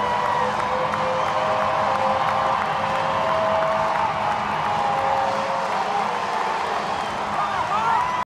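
Baseball stadium crowd cheering and clapping for a home-team home run, a steady din of many voices with a few whoops and whistles rising through it near the end.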